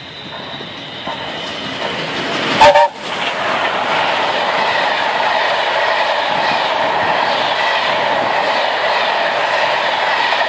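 A fast train approaching and passing close by: the noise builds, a brief chime whistle blows with a loud buffet of air about two and a half seconds in, then the coaches rush past with a steady roar and clickety-clack of wheels on rail joints. The train is the rail tour behind LNER A4 Pacific 60007 Sir Nigel Gresley, and the short three-note chord fits the A4's chime whistle.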